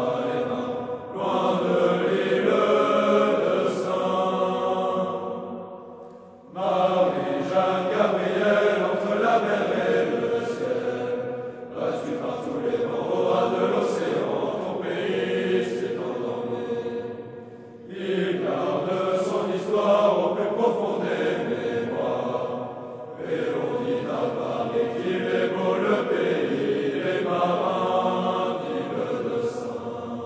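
A group of cadets singing a traditional French military song together, in sung phrases of about five to six seconds, each followed by a short pause.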